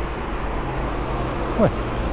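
Steady background road-traffic noise: a constant low rumble and hiss with no distinct passing vehicle.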